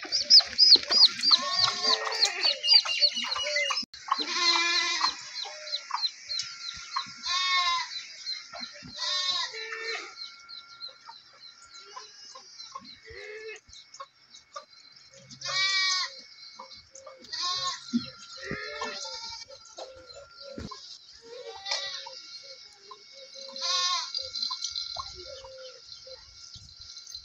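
Goats bleating repeatedly, quavering calls every few seconds, over a constant high chirping of small birds.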